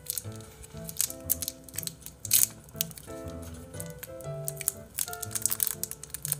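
Plastic candy-bar wrapper crinkling in irregular crackles as a Snickers bar is handled and opened, over soft background music with steady held notes.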